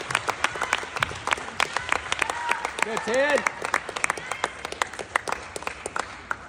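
A crowd applauding, with scattered voices calling out. The clapping thins out and fades over the last couple of seconds.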